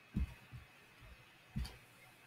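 Soft low thumps of handling noise at the microphone, strongest near the start and again about a second and a half in, the second with a sharp click. A faint steady high whine sits underneath.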